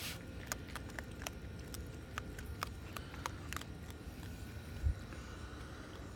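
Raccoon crunching dry kibble: a string of sharp, irregular crunches, two or three a second, fading out after about four seconds. A single low thump about five seconds in.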